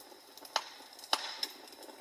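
Sparse, irregular sharp pops and crackles of a wood fire burning, two clear pops about half a second and just over a second in, over a faint steady background.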